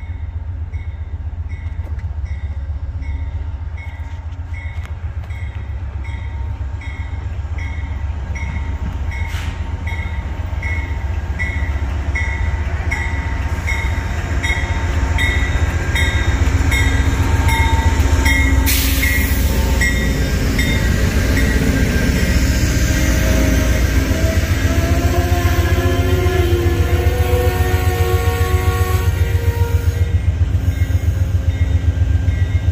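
Amtrak GE Genesis P42DC diesel locomotive pulling the Pennsylvanian passenger train in and close past, its engine rumble growing louder as it nears, while a bell dings steadily about one and a half times a second. About two-thirds of the way in the bell stops and there is a short loud hiss. The passenger cars then roll by with metal squealing that slides in pitch.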